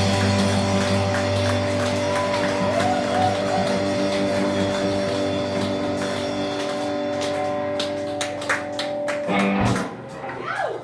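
Live rock band with electric guitars holding one ringing chord that slowly fades, a few sharp hits coming in near the end, then a last chord that cuts off suddenly just before the end: the close of the song.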